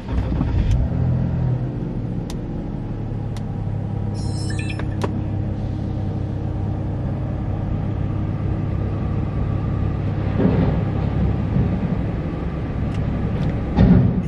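Car engine running, heard from inside the cabin as a steady low hum, with a few light clicks in the first few seconds.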